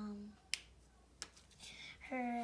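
A child's voice humming a held note that stops just after the start, then two sharp clicks about two-thirds of a second apart.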